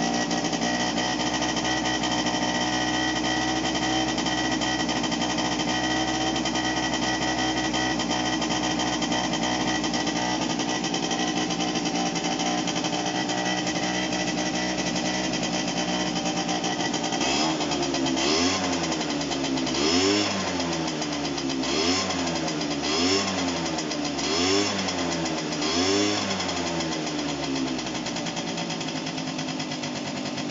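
Honda SH50 City Express scooter's small two-stroke single-cylinder engine idling steadily, just started on a replacement ignition coil and not yet warmed up. In the second half it is revved six times, the pitch rising and falling with each blip of the throttle, then it settles back to idle.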